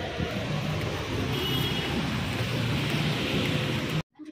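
Steady rush of heavy rain falling on a street, mixed with traffic noise, with a brief high tone about one and a half seconds in.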